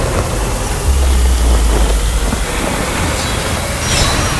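Loud, dense horror-trailer sound design: a steady wash of noise filling the whole range, with a deep low rumble that swells in about a second in and fades out after about a second and a half.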